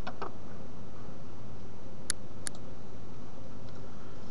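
Two sharp computer-mouse clicks about half a second apart, a little over two seconds in, over a steady background hiss.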